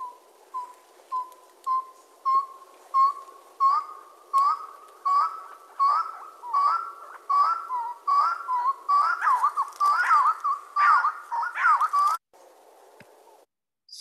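Recorded song of a long-tailed wood-partridge, played back with a faint hiss. It is a series of short whistled notes that start soft, about every half second, and grow louder and faster. They build into a jumble of overlapping, warbling notes and stop abruptly about twelve seconds in.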